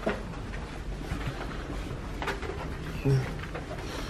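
Footsteps and handheld camera handling noise while walking down a hallway, with a couple of sharp clicks and a brief low hum about three seconds in.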